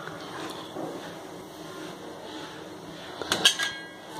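Poppy seeds poured from a small steel bowl into a steel pan of coarse malida mixture, a soft trickle; a little after three seconds in, a few sharp clinks of steel bowls on a steel plate.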